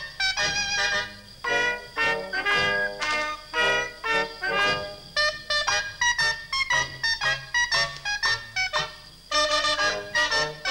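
A cobla, the Catalan dance band of shawms and brass, playing a lively folk dance tune in short, detached phrases over a bass line.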